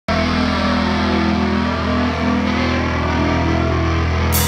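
Live amplified electric guitars holding one sustained low chord, ringing steadily with no drum hits.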